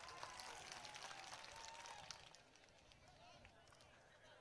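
Near silence of an outdoor gathering: faint distant voices for about two seconds, then quieter still.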